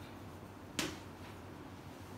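A single sharp tap of chalk striking a blackboard a little under a second in, over a steady low hum.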